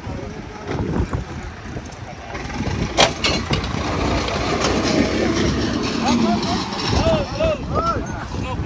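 A tractor's diesel engine runs throughout, with a single sharp knock about three seconds in. Men's voices call out over it near the end.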